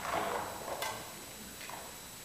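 A couple of light clicks and knocks, about a second apart, from bass gear being handled by a bass amp on stage.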